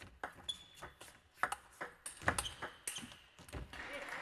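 Table tennis rally: the plastic ball clicking off the rackets and the table in a string of quick, sharp strikes at an uneven pace.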